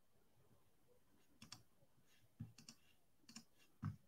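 Faint clicks of a computer keyboard, about eight short taps in small clusters, the strongest near the end.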